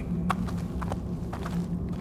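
Footsteps on cave rock, a few separate steps, over a steady low drone of cave ambience.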